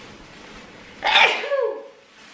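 A woman sneezing once, a sudden voiced burst with falling pitch about a second in.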